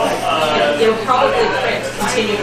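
Indistinct voices talking, no words clear.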